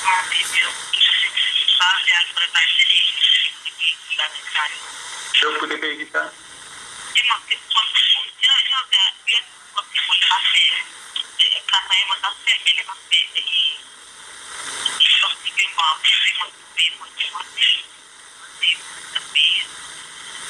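A person talking almost without pause. The voice sounds thin and tinny, lacking low tones, like speech heard over a phone line.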